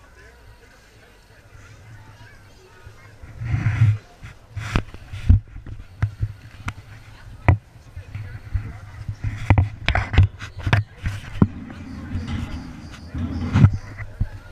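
Irregular sharp knocks and clicks over a low rumble, starting about three seconds in, with indistinct voices in the background.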